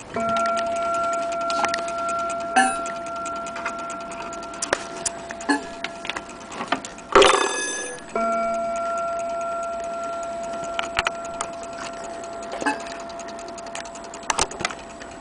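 A chime rod of an Elliott Westminster mantle clock struck twice, at the start and about eight seconds in, each time ringing one clear note that dies away slowly over several seconds. Just before the second strike comes a brief loud metallic clatter, and small clicks and taps of handling run through.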